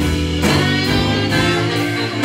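Live band playing a song with no singing: a horn section of saxophone, trumpet and trombone over electric keyboard, electric bass and drum kit, with a few cymbal strikes.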